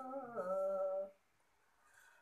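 A woman singing a Tagin gospel song unaccompanied, holding the last syllable of a line for about a second as her pitch steps down, then a short pause before the next line.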